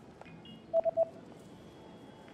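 Three quick electronic beeps at one pitch, about a second in: a quiz sound effect as the answer choices come up.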